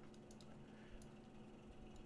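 Near silence with a few faint clicks from a computer keyboard and mouse.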